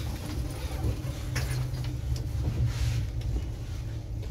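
Inside a CrossCountry HST passenger coach running slowly into a station: a steady low rumble of wheels and running gear on the track, with scattered light clicks and knocks.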